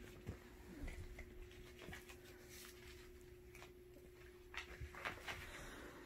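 Faint rustling and soft, scattered knocks of a cat rolling and kicking at a fabric catnip toy on carpet, over a faint steady hum.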